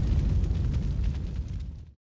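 Tail of a deep boom sound effect in a TV channel's logo sting: a low rumble that slowly fades out and then cuts off just before the end.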